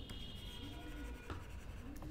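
Stylus writing on a tablet screen: faint scratching of the pen tip with a few light taps.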